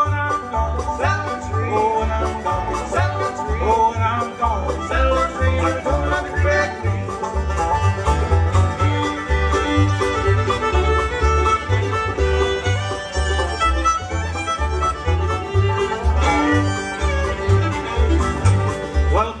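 Live acoustic bluegrass band playing an instrumental break: fiddle, banjo, mandolin and guitar over an upright bass keeping a steady beat, with the fiddle taking the lead at the microphone in the second half.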